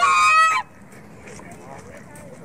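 A white domestic goose honking once, a loud call lasting just over half a second right at the start.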